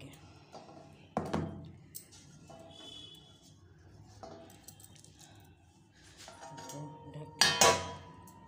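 Steel kitchenware clattering: a light clink about a second in, then a loud ringing clang near the end as a steel plate is set over the bowl as a lid.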